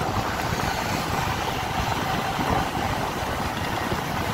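Steady engine and road noise of a vehicle driving along a highway, with low wind rumble on the microphone.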